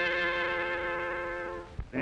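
A brass fanfare ends on one long, buzzy held chord that cuts off after about a second and a half, followed by a brief low thump.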